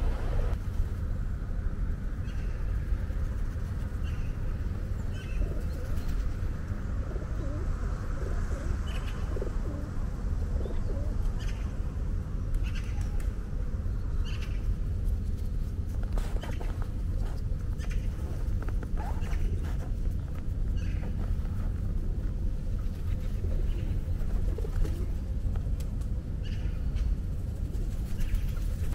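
Feral pigeons cooing, with occasional wing flaps, over a steady low rumble.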